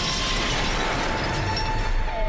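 Cartoon sound effect of glass shattering: a sustained crash of breaking glass and falling shards as bodies smash through a glass roof.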